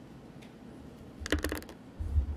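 A short run of quick, light clicks a little past the middle, after a quiet stretch.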